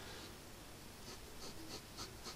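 A 0.7 mm ink pen scratching faintly on drawing paper, several short strokes in the second half as panel lines are drawn.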